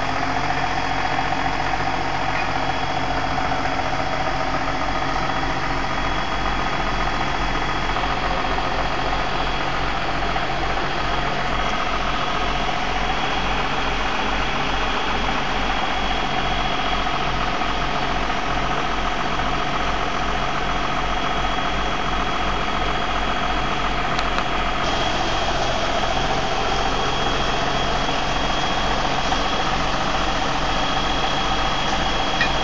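John Deere 7505 tractor's diesel engine idling steadily.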